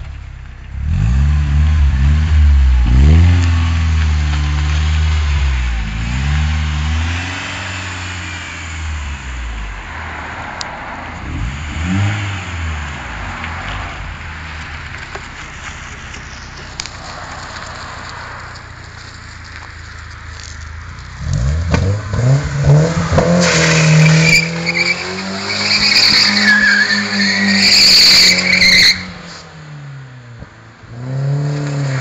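BMW E36 engine revving in repeated bursts, then running more quietly; about 21 seconds in the revs climb and the rear tyres squeal for about six seconds as the car slides round in a drift circle, the squeal cutting off suddenly near the end.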